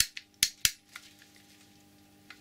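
About five sharp clicks in the first second as hands handle a vintage Speedway electric drill's metal body and chuck, then a faint steady hum.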